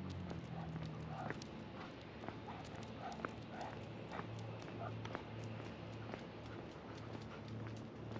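Walker's footsteps on a concrete sidewalk, soft thuds about one and a half a second, with light sharp clicks and ticks over them. A passing car's engine hum fades out in the first moment.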